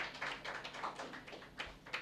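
A quick, irregular run of light sharp taps, several a second, at a low level.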